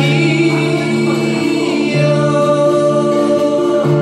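Two male voices singing together in long held notes over two strummed acoustic guitars, the notes moving to new pitches about two seconds in and again near the end.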